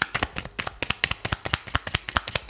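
A deck of tarot cards being shuffled by hand: a quick, irregular run of card flicks, about ten a second.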